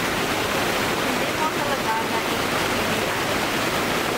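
Steady rushing splash of water from a plaza fountain. Faint voices come in briefly about halfway through.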